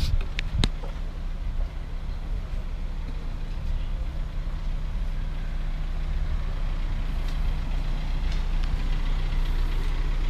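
A car engine idling steadily, with a single sharp click about half a second in.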